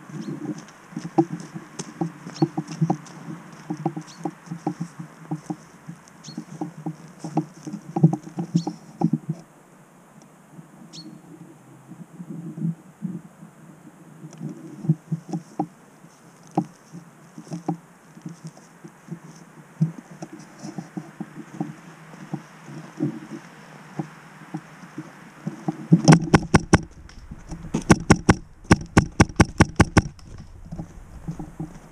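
Footsteps and rustling through grass and dry leaf litter as a player moves, with irregular small knocks and clicks. Near the end come a run of louder, sharp knocks, about three a second.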